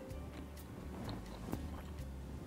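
Soft background music with a low bass line, under a few faint clicks.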